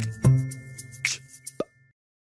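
Short electronic closing jingle: low notes struck twice early on and ringing down, with high ticks over them, then one short sharp hit and an abrupt cut-off just before the end.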